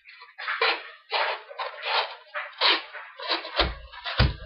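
Pocket knife blade (a Great Eastern Cutlery Workhorse Whittler) slicing and shaving corrugated cardboard: a run of short rasping strokes, about two a second. A low thump near the end.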